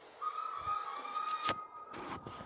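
A steady, high whistle-like tone starts just after the beginning and holds one pitch throughout. A single sharp click comes about a second and a half in.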